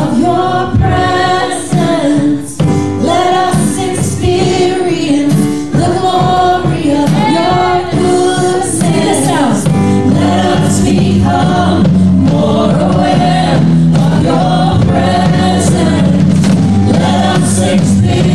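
Live worship song: female voices singing the melody with harmony, over acoustic guitar and stage piano. About halfway through, a steady low chord fills out the accompaniment beneath the voices.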